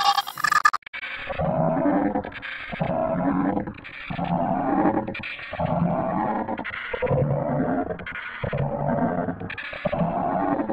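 A cartoon character's voice, electronically distorted and pitched down. It drops from a high, bright stretch to a much deeper one about a second in, then repeats in roughly one-second stretches with short gaps between them.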